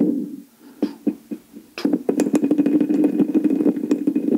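A rapid rattling buzz picked up by a toy karaoke microphone and played through the karaoke machine's own speaker with its echo effect on. It starts about two seconds in, after a few scattered clicks.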